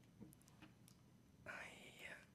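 Near silence: room tone, with a faint breathy intake of breath near the end.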